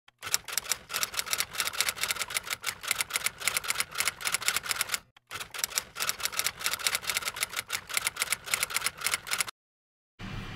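Typewriter sound effect: fast, even key strikes in two runs of about five and four seconds with a brief pause between them. The strikes stop abruptly about half a second before the end.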